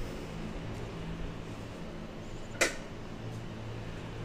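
Quiet room tone with a low steady hum, and a single sharp click about two and a half seconds in.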